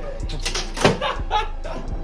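A plywood shipping crate's lid being lifted off, with a sharp wooden knock a little under a second in, over background music.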